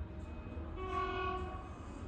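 A truck horn sounds once, a steady held tone of about a second, played through a TV speaker in a small room, over a low steady hum.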